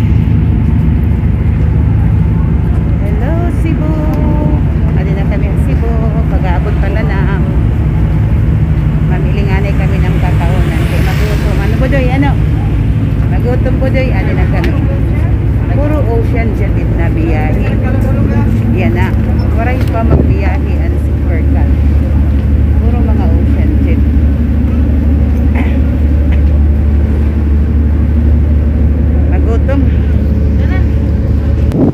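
Steady low engine hum from fast ferries docked at the pier, with the chatter of a crowd of passengers walking past. About two-thirds of the way through the hum drops lower and grows stronger.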